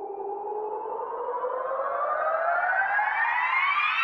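A single pitched tone with overtones sliding steadily upward in pitch and growing louder, a rising sweep sound effect closing the show.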